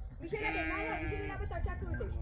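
A sheep bleating: one long, wavering bleat starting about half a second in and lasting about a second.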